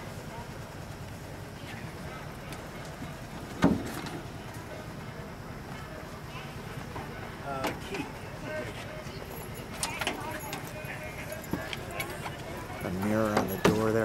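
A single sharp metal clunk about four seconds in, as the hinged side panel of the 1928 Whippet's hood is shut after the fuel has been turned on, over a steady low background hum. Voices come in near the end.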